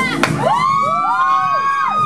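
Several voices whooping over the samba music as its beat drops out: long overlapping calls that start one after another, slide up, hold and then fall away together. A sharp click comes just before them.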